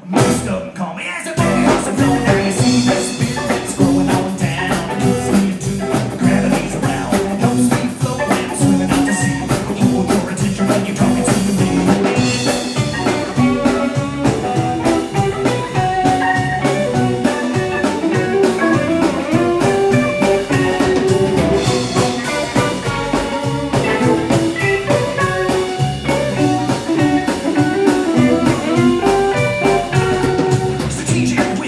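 Live blues-rock band playing an instrumental passage on electric guitar, bass, drums and mandolin, with the drums keeping a steady beat. The band comes back in together at the very start after a brief near-pause.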